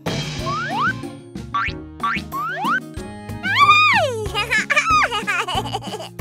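Cartoon background music with comic sound effects: a sudden noisy burst at the start, then several quick rising boing-like sweeps, and a drawn-out cry that rises and falls in pitch around the middle.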